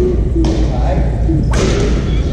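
Badminton rackets striking a shuttlecock: two sharp cracks about a second apart, the second and louder one near the end, over a steady low hum.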